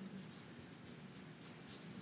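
Felt-tip marker writing on paper: a series of short, faint scratching strokes as characters are drawn.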